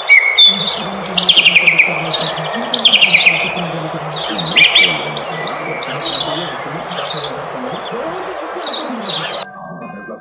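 A chorus of birds chirping and calling in tall trees: many sharp chirps and downward-sliding trilled calls overlapping, over a low wavering hum. It all cuts off abruptly near the end.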